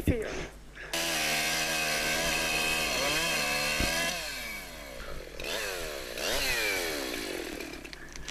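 Two-stroke chainsaw cutting into a large tree trunk, its engine running steadily at high revs under load and dipping in pitch about two seconds in. In the second half it revs down and up several times.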